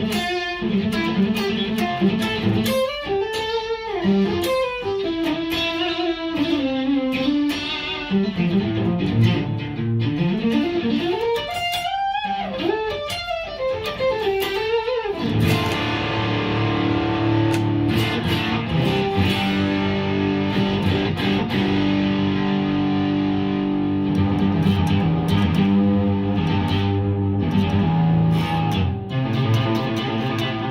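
Electric guitar played through a homemade 1-watt tube amp with a single ECC81 tube in its class A/B power section and a preamp based on the Friedman Dirty Shirley: bending single-note lead lines for about fifteen seconds, then thicker, sustained chords.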